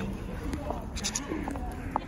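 Caged budgerigars chirping and chattering in short, scattered calls, with people's voices in the background.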